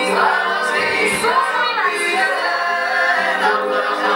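Several voices singing a Georgian song together in harmony over a steady held low note, played back from a TV set.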